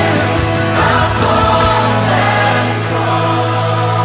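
Contemporary Christian worship song: held chords over a steady bass, with sung lead vocals and choir-like backing voices.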